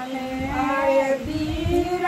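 A high-pitched voice singing long, drawn-out notes that slide from one pitch to the next.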